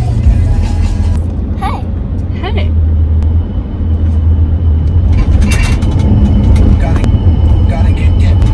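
Deep, steady rumble of a car on the move, heard from inside the cabin, with two short chirps about two seconds in and a few light clicks later.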